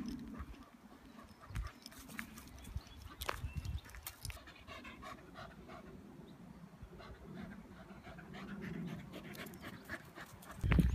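English Cocker Spaniel panting faintly, with light irregular crunching of footsteps on a gravel track.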